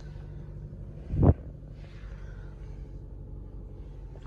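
Steady low hum of the 2019 Jeep Compass Trailhawk's 2.4-litre four-cylinder engine idling, heard inside the cabin. One short, loud thump about a second in.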